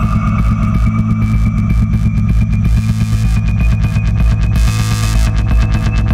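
Acid techno track: a steady heavy bass beat with fast chopped high percussion, under a thin synth tone that slowly rises in pitch.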